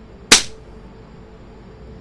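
A single loud, sharp crack about a third of a second in, dying away within a quarter second, over a faint steady hum.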